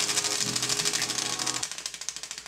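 Flaps of an eight-module DIY split-flap display flipping, a rapid, even clatter of many small plastic flaps snapping over as the modules cycle through characters in the display's startup sequence; the clatter thins out near the end as modules come to rest.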